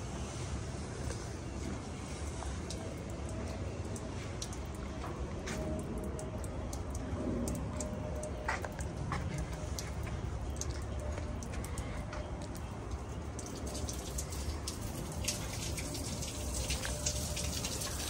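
Schwing SP500 trailer concrete pump running with a steady low rumble, with scattered light ticks and drips over it. A hiss grows in over the last few seconds.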